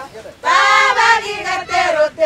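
A group of women singing together. There is a short break about half a second in, then the voices come back strongly in long held notes.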